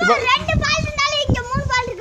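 A child's high-pitched voice speaking in short phrases.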